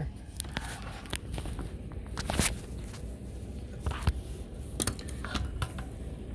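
Handling noise from a rifle fitted with a laser sight: scattered clicks, taps and rustling as a gloved hand moves over it, with a few sharper knocks, the loudest about two and a half seconds in.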